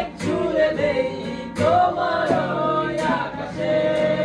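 Male voices singing a Bengali song together over a steadily strummed acoustic guitar.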